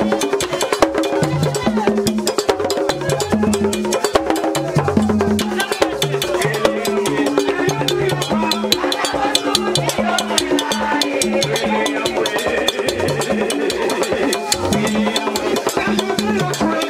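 Haitian Vodou drums played with a stick and bare hands in a fast, steady rhythm: sharp, dense clicking strikes over deeper pitched drum notes, with voices singing over them.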